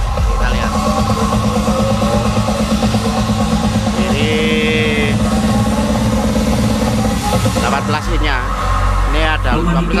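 Electronic dance music with a heavy, pulsing bass beat played loud through a large stacked sound system during a sound check, with voices coming in near the end.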